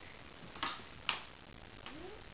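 Two light, sharp taps about half a second apart, then a fainter third near the end.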